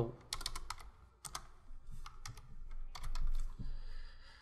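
Computer keyboard typing: irregular keystroke clicks in small clusters as a line of code is entered.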